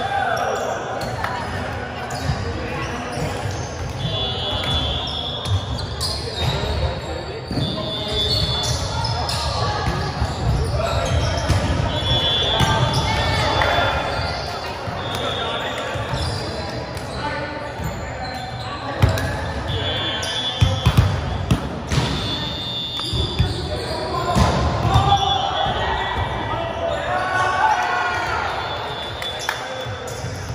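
Indoor volleyball play echoing in a large gym: the ball being struck, with several sharp hits close together past the middle, over players calling out and shoes squeaking on the hardwood court.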